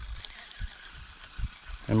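A pause in a man's talk: faint background noise with a few short low thumps, then his voice comes back right at the end.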